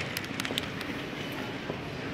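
Steady background noise of a large shop hall, with a few faint crinkles from clear plastic flower sleeves brushing past the phone in the first half second.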